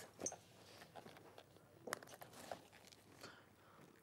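Near silence broken by a few faint clicks and rustles of a small jewellery box being handled and opened.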